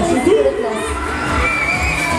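Riders on a swinging funfair thrill ride screaming and shouting together, with a high drawn-out scream near the end, over fairground music.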